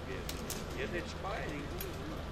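Faint voices of several people talking in the background, with a few brief clicks.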